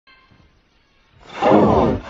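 A deep, distorted, roar-like voice swells in loudly from just over a second in, after a faint high tone at the very start.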